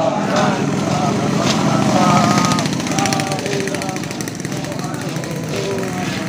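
Group of marching soldiers chanting a marching song together in many voices, with the tramp of boots and rattle of gear on the road beneath it.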